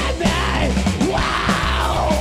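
Live three-piece rock'n'roll band playing loud: electric guitar, electric bass and drum kit, with a shouted vocal.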